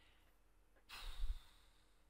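A man's short breath, a sigh-like exhale into a close microphone, about a second in.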